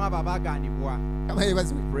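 Steady electrical mains hum through a PA sound system, with short fragments of a man's voice over the microphone.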